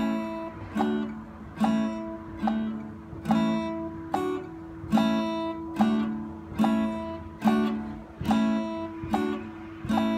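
Steel-string acoustic guitar strummed once per beat at about 72 beats per minute, each chord left to ring until the next stroke. The player switches between open A, D and E chords in a beginner's one-minute chord-change drill.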